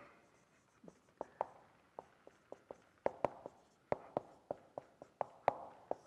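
Marker writing on a whiteboard: a quick run of short squeaks and taps of the marker tip, starting about a second in and stopping shortly before the end.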